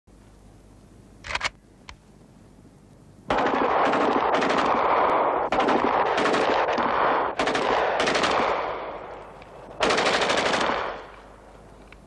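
Kalashnikov assault rifle firing on full automatic: a long burst starts suddenly about three seconds in and lasts some six seconds, then after a short pause comes a second burst of about a second. Two brief knocks come before the firing.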